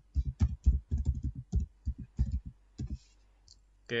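Computer keyboard typing: a quick, uneven run of about fifteen keystrokes as a password is entered, stopping about three seconds in.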